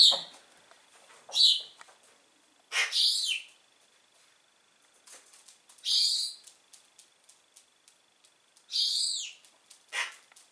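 Young pigeons giving short, high, squeaky calls, five in all, spaced a second or more apart; the last call falls in pitch. Faint light ticks sound in between.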